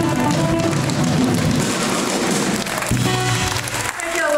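Live blues-soul band playing, electric guitar and drum kit with a wash of cymbals, and a chord struck and held again about three seconds in.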